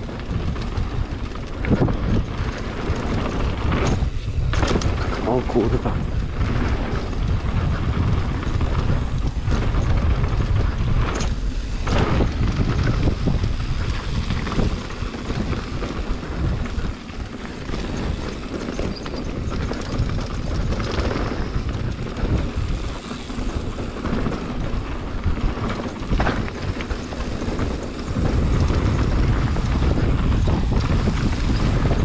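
Wind buffeting an action camera's microphone on a mountain bike at speed, over the rumble of knobby tyres rolling on a dirt trail, with occasional knocks and rattles from the bike going over bumps.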